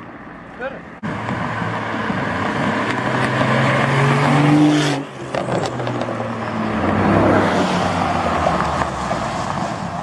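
Sports-car engines accelerating away. One engine note climbs steadily and cuts off sharply about five seconds in, followed by more engine noise that swells again near the middle of the second half.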